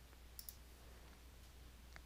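Computer mouse button clicked: two faint clicks close together about half a second in, over near silence.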